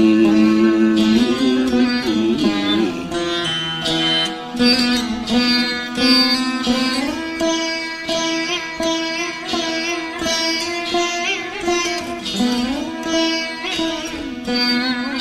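Saraswati veena playing Carnatic music: plucked notes with frequent sliding bends in pitch.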